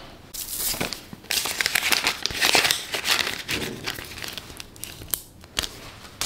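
Canadian polymer banknotes being handled and counted out by hand, crinkling in short bursts about once a second.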